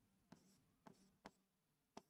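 Near silence with four faint ticks of a stylus on a pen tablet during handwriting.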